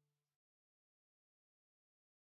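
Silence: the soundtrack is blank.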